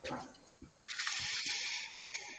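A steady hiss of noise lasting about a second, starting about a second in, after a brief soft sound at the start.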